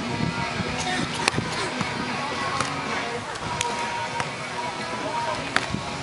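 Hands striking a beach volleyball during a rally: a sharp smack about a second in as the serve is hit, fainter hits in the middle, and another sharp hit near the end. Background music and chatter run underneath.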